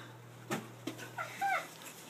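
A dog whining: two short whines that rise and fall in pitch, about a second in. Just before, a couple of sharp clicks come from a cardboard gift box being handled.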